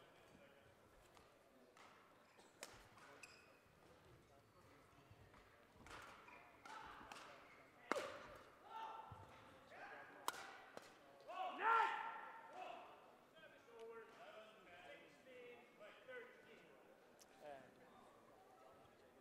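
Faint sports-hall background of indistinct distant voices, strongest about twelve seconds in, with a few sharp knocks, the loudest about eight and ten seconds in.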